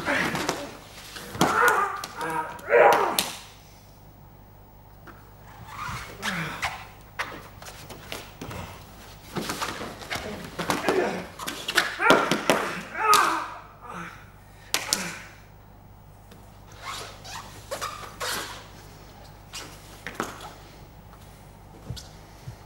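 Two grapplers working on a foam mat: bodies thumping and scuffing on the mat, with short vocal grunts and breaths from the fighters in several bursts.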